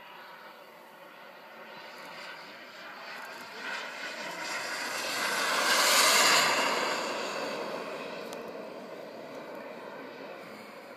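Radio-controlled model jet making a low pass. Its engine sound grows steadily louder, is loudest about six seconds in as the jet goes by, then fades as it flies away.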